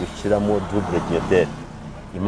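A person talking, with a car engine running steadily underneath.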